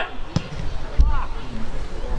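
A soccer ball struck by a long goal kick makes a short sharp thud, then a heavier low thump about a second in.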